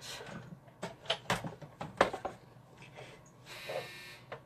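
Crafting equipment being handled on a tabletop: a series of knocks and clunks, the loudest about two seconds in, then a short rustle near the end.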